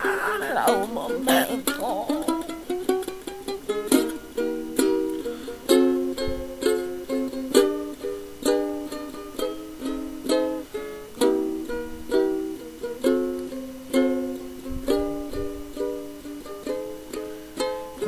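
Lo-fi homemade song's instrumental break: a small acoustic plucked string instrument strummed in a repeating chord pattern, each strum a sharp attack that rings and fades. A sung cry trails off in the first second or two.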